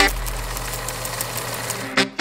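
A steady low electronic drone with a hiss over it, slowly fading, in a break of the montage's electronic soundtrack.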